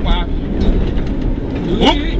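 Rally car at speed on a gravel road, heard from inside the roll-caged cabin: steady engine and tyre noise over the loose surface.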